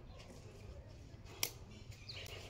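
Faint outdoor background with a low rumble and a single sharp click about one and a half seconds in.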